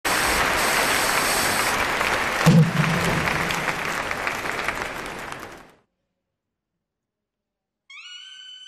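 Audience applause fading out over about six seconds, with one low, loud hit about two and a half seconds in, then silence. A rising electronic tone starts right at the end.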